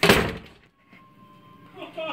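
A drinking glass thrown against a wall and shattering: one loud crash right at the start that dies away within about half a second.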